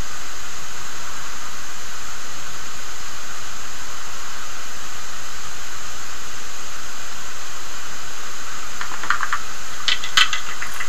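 Steady, loud hiss of background noise that does not change, with a few faint clicks near the end.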